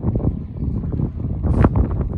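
Wind buffeting the microphone: an uneven low rumble with irregular thumps, and a brief rustle about one and a half seconds in.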